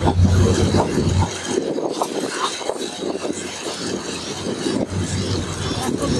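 Passenger train running, heard from inside the carriage: a steady rattle and rubbing of the coaches and wheels on the rails. A low hum cuts out about a second in.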